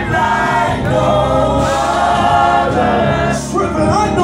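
Live gospel worship song: a male lead singer and a choir singing together, with held notes over steady low accompaniment.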